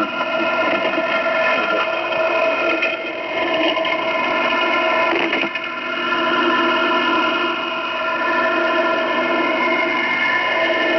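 Shortwave receiver audio in lower sideband at 5448 kHz: an even hiss with a cluster of steady tones held together, a continuous drone with no voice on the channel.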